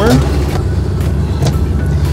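A steady low rumble with a few light clicks as the engine primer knob of a parked, not-yet-started Citabria is unlocked and pulled out.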